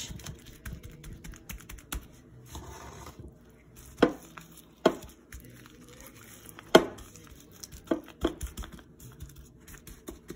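Gloved hand rubbing minced garlic over raw salmon fillets on a metal baking sheet: faint wet rubbing and rustling, broken by a few sharp knocks, the loudest about four and seven seconds in.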